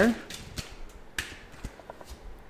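A deck of tarot cards being handled and shuffled in the hands: a few soft, scattered clicks of card stock, the clearest about a second in.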